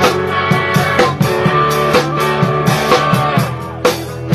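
A live rock band playing: electric guitar over a drum kit keeping a steady beat, dipping a little in loudness just before the end.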